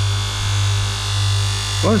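A 300-watt electric bench grinder runs with a steady hum that swells and fades gently. A knife blade is held lightly against its flap (lamella) sharpening wheel, without heavy pressure.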